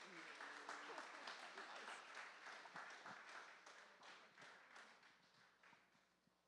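Faint audience applause, many hands clapping, strongest in the first couple of seconds and dying away by the end, with faint voices underneath.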